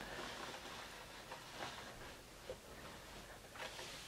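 Faint handling sounds as a wooden lazy kate is shifted around on carpet, with a few soft knocks.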